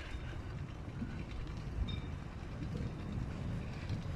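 Mafia Bomma 29-inch single-speed bike ridden slowly, about 10 km/h, over concrete block paving: a steady, low rolling noise from the tyres and bike.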